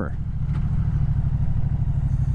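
Moto Guzzi V100 Mandello's 1042 cc 90-degree V-twin running steadily under way, a low, even pulsing engine note.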